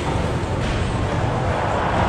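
Steady ambience of a busy indoor bus-terminal concourse: a constant low hum with a faint murmur of people and no single event standing out.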